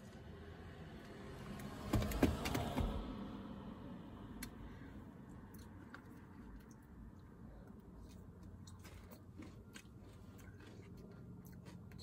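A noisy sip through a straw from a plastic cup about two seconds in, then quiet chewing with scattered light clicks of a spoon in a plastic acai bowl.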